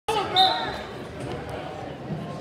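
Wrestling referee's whistle starting the bout: one short, high, steady tone about half a second in. It sounds over shouting voices in an echoing gym.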